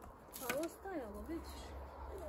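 Faint, quiet speech: a voice talking softly in the background, with a single light click just after the start and a steady low rumble underneath.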